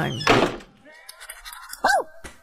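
A dull thunk just after the start, then near the end a single short, high yip from a puppy.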